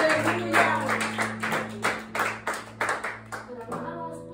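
Rhythmic hand clapping, about three claps a second, over held low notes of worship music; the clapping stops shortly before the end, leaving the sustained notes.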